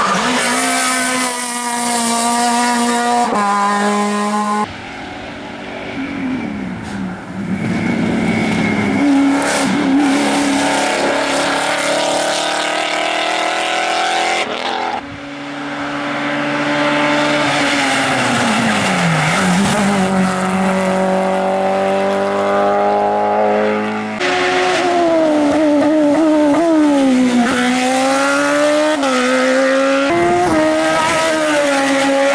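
Race cars driven flat out past the roadside one after another, engines revving high and dropping back through gear changes. First a small rally car, then near the end a single-seater formula car; the sound jumps abruptly several times where separate passes are joined.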